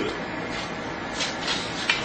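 Wet hay being stirred and pushed around in a steel pan of oily water with a metal spoon: a few short scraping, rustling swishes about a second in, and a sharp clink near the end.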